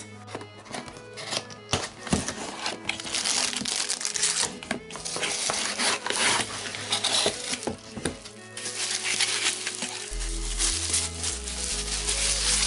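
Cardboard box being opened and bubble wrap crinkling and crackling as it is handled and pulled off a figure, with background music.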